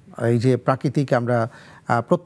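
Speech only: a man talking in a steady studio voice, with a short pause about one and a half seconds in.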